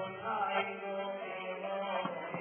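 Devotional chanting: voices holding long sung notes.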